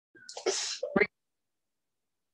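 A person's short, breathy vocal burst, ending in a brief sharp sound about a second in, then cut off suddenly.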